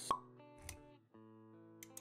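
Intro music with held synth-like notes, broken by a sharp pop sound effect just after the start and a softer low thud about half a second later. The music drops out briefly around one second in, then resumes.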